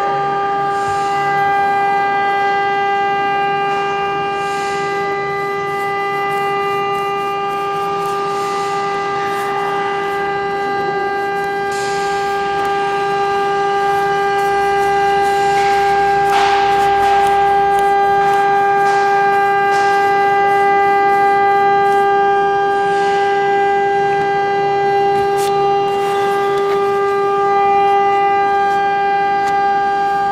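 A loud, steady droning tone held at one unchanging pitch throughout, with a buzzy edge and a few faint scrapes and taps over it, the clearest about sixteen seconds in.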